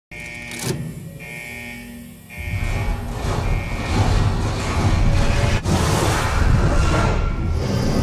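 Cinematic logo-intro music with mechanical whirring. A deep rumble swells from about two seconds in, with a single sharp click a little past halfway.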